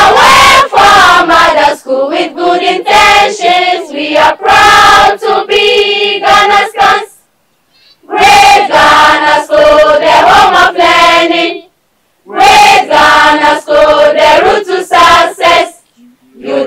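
A school choir of teenage girls and boys singing their school anthem together, unaccompanied. The singing comes in phrases, breaking off to silence briefly about seven seconds in and again about twelve seconds in.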